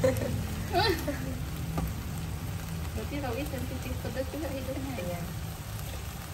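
Quiet talking over a low, steady sizzle of durian flowers stir-frying in a pan.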